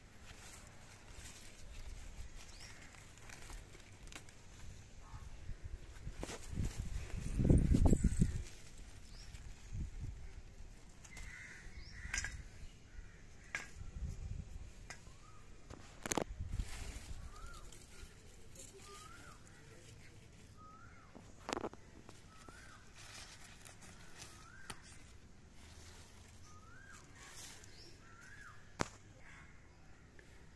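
A bird calls a short, rising note over and over, about once a second, through the second half. Scattered sharp clicks and a louder low rumble about seven seconds in sit underneath it.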